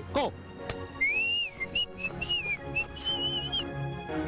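A whistled tune over background music: a single high, wavering melody line that starts about a second in and stops shortly before the end.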